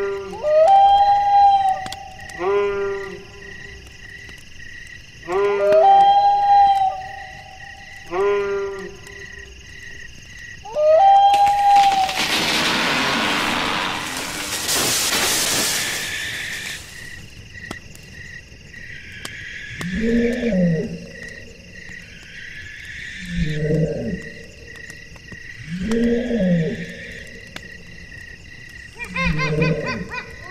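Night ambience of wild animal calls over a steady, evenly pulsing high chirp. Short rising-then-held cries repeat in the first ten seconds, a loud rushing noise fills about five seconds in the middle, and lower arching calls come about every three seconds after that.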